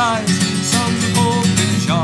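Acoustic guitar strummed in a steady rhythm, with a man's sung note carrying over at the start.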